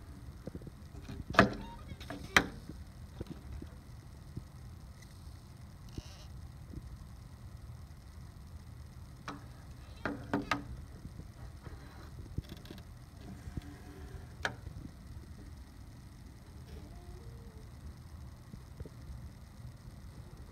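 Hand handling of a plastic K'NEX construction model, with a few sharp plastic clicks and knocks: two loud ones about a second and two seconds in, a pair about ten seconds in and one more near fifteen seconds. A low steady rumble runs underneath.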